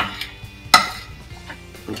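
Metal spoon clicking and scraping against a plate as a vitamin tablet is crushed into powder under it: a few sharp clicks, the loudest about three-quarters of a second in.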